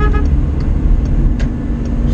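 Engine and road noise of a vehicle driving at highway speed, heard from inside the cabin: a loud, steady low rumble.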